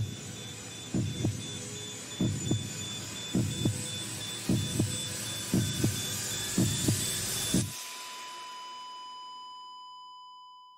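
Sound-designed heartbeat: paired lub-dub thumps about once a second, about seven beats, over a faint hiss and high whine. It stops abruptly near the end, leaving a single steady electronic beep tone that slowly fades, like a heart monitor flatlining.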